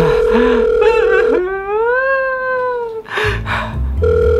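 Telephone ringback tone from a phone held to the ear: a steady beep for about a second and a half, then the next ring starting right at the end. Between the rings comes a drawn-out voice-like sound that rises and then falls in pitch.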